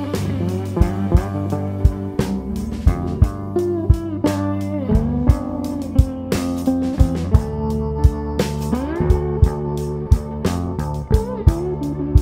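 Live electric blues band playing an instrumental passage: electric guitar with sliding, bending notes over a steady drum-kit beat.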